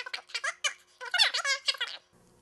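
Rapid, high-pitched squeaky chatter in short bursts, like a woman's voice sped up into a chipmunk effect.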